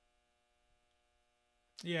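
Near silence with a faint, steady electrical hum, and a man's voice starting near the end.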